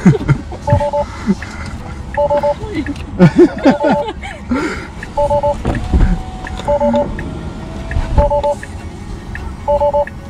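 Tesla Model 3 warning chime: a short two-tone beep repeating about every second and a half, sounding while the passenger door stands open. Laughter about four seconds in.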